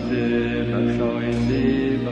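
Background music of a sung Zoroastrian prayer chant, a voice holding long notes over a steady low drone.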